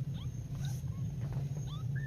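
Very young kittens giving short, thin, high-pitched mews, several in quick succession, over a steady low hum.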